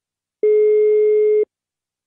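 Telephone ringback tone heard over the phone line: one steady beep about a second long while the called phone rings at the other end, before the call is picked up.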